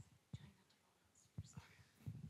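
Near silence in a large hall: a few faint, brief low thumps and soft murmured voices.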